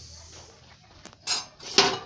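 Sesame seeds poured from a bowl into a dry non-stick kadhai, a light rushing patter, followed by a click and two louder clatters in the second half, the last the loudest.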